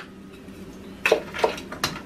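A cooking utensil knocking against a skillet three times in the second half, as vegetables are stirred in the pan.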